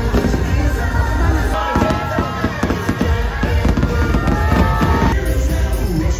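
Fireworks bursting in quick succession over loud show music with heavy bass, played for the fireworks display. The bangs come thickest in the middle.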